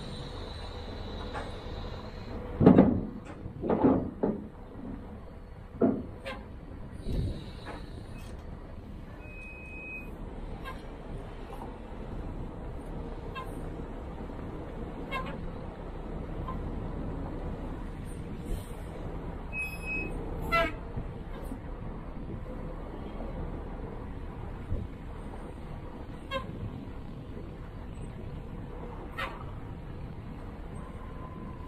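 Large forklift's engine running steadily while it handles heavy conveyor-belt rolls onto a steel flatbed deck, with several loud knocks and clanks about three to four seconds in, again around six and seven seconds, and once more about twenty seconds in. Two short high beeps sound around ten and twenty seconds.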